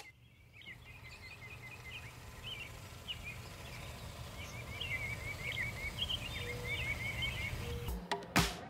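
Birds chirping in short calls and quick trills over a steady low rumble of outdoor ambience, growing gradually louder.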